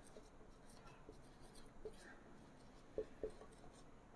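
Faint scratching of a marker writing on a whiteboard, with a couple of small taps about three seconds in.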